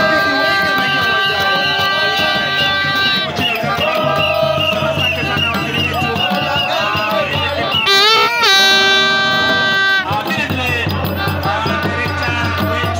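Isukuti drums beaten in a fast, driving rhythm under a crowd's singing and shouting, with long held pitched notes over it and one note sliding up and holding about eight seconds in.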